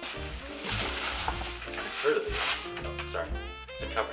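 Tissue paper rustling and crinkling as a frying pan is pulled out of a gift bag, for the first two seconds or so. Background swing music with a steady bass runs underneath.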